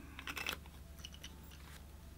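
Faint small clicks and rustles of a fountain pen and a paper notebook being handled, a few in the first half second and another about a second in, over a low steady hum.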